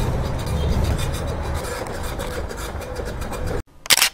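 Convenience store room noise: a steady low hum with faint music. It cuts out suddenly near the end, and a brief sharp click follows.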